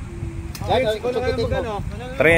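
A person's voice speaking or calling out, starting about half a second in and running almost to the end, over a steady low background rumble.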